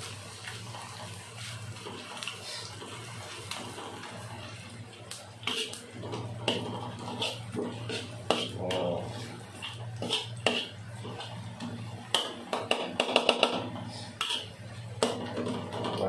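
Metal spatula scraping and clicking against a wok as fried rice ingredients are stirred, in irregular strokes, over a steady low hum.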